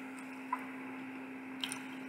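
Close-up wet chewing of a soft chicken burger: a few soft mouth clicks, one about half a second in and a couple more near the end, over a steady low hum.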